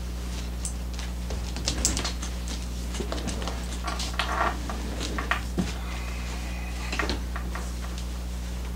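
Irregular light clicks and rustling of a chocolate Labrador puppy scrambling about and being handled, over a steady low hum.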